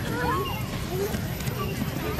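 Children's voices calling out in short rising and falling cries as a group runs across grass, over the soft thuds of many running footsteps.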